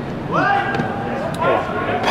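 A voice giving a long drawn-out call: its pitch rises quickly at the start and then holds level for about a second, followed by a second held note near the end.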